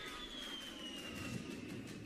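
A-10 Warthog's twin turbofan engines passing in flight, a high whine that falls slowly in pitch over a faint rushing noise.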